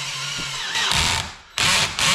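Electric drill with a small carbide bit boring a pilot hole through a metal bracket held in a vise, run dry without cutting lubricant. The motor runs steadily, dips briefly about a second and a half in, then comes back louder and harsher near the end as the bit cuts.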